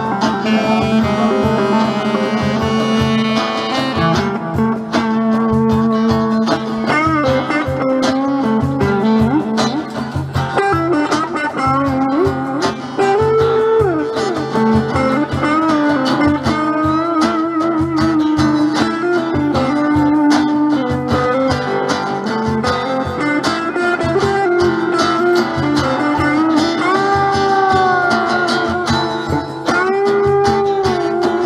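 Live blues band playing an instrumental break with no singing. A saxophone holds a note for the first few seconds, then an electric guitar plays a solo with bent notes over rhythm guitar and cajón.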